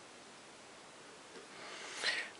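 Faint, steady hiss of room tone with no distinct events, growing slightly louder near the end.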